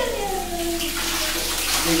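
Water running from a wall tap into a plastic mug, a steady splashing hiss.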